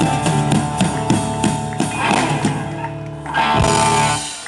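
Blues-rock band playing live with electric guitar, keyboard and drums, coming to the end of the song. The sound thins out briefly, then a last full-band hit near the end rings on.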